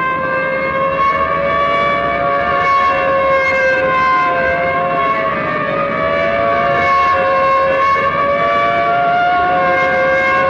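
Police siren wailing continuously at a high, held pitch that wavers slowly up and down, as a police car speeds through city streets.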